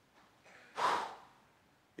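A man's single breathy "whew": one short, unvoiced puff of breath about a second in.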